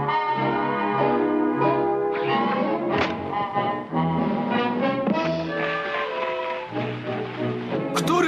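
Orchestral cartoon score led by brass, with the trombone prominent, playing a melody of held notes. A single short, sharp percussive hit lands about three seconds in.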